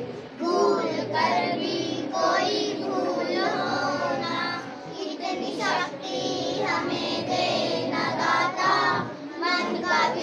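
A group of children singing together, with pauses between lines.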